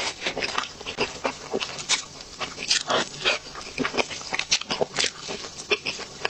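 Close-up mouth sounds of a person eating chocolate sponge cake layered with cream: a bite and then chewing, with many irregular wet smacks and clicks.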